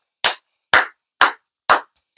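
A man clapping his hands four times in a steady beat, about two claps a second.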